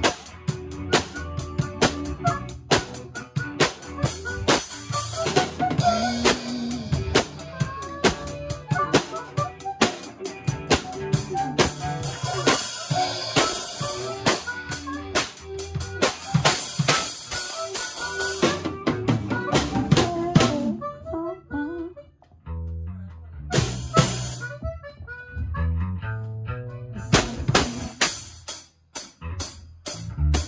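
A live rock band without vocals: drum kit with snare and cymbals, electric guitar, bass and harmonica. About twenty seconds in the drums drop out into a sparse break of bass and guitar with a single hit, and the full kit comes back in near the end.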